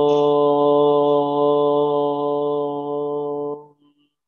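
A man's voice holding one long, steady chanted note at a constant pitch, which breaks off about three and a half seconds in.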